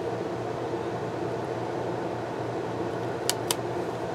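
Steady fan-like room hum, with two brief clicks about a second apart near the end as hands press and adjust a foil sticker on a spiral planner page.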